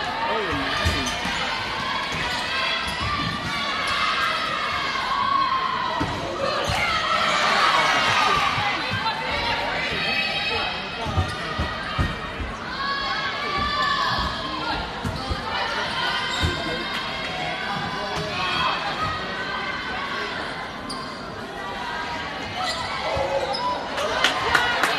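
Indoor volleyball play: the ball being struck and hitting the hardwood floor in scattered thumps, over a steady hubbub of spectators' and players' voices in the gym.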